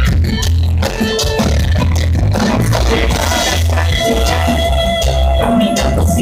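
Live band playing an instrumental reggae-rock passage: electric guitar, bass guitar and drums, with a heavy bass line and a held guitar note in the second half. Recorded loud through a phone's microphone.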